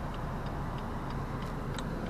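Car turn-signal indicator ticking evenly, about three clicks a second, over the low steady hum of the BMW's diesel engine.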